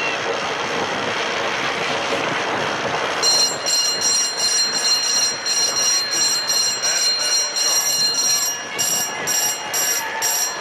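Crowd noise in a velodrome. From about three seconds in, a high-pitched bell rings over it in quick repeated strokes, about two a second.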